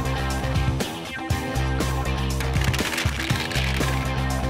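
Background music with a steady beat over sustained bass notes.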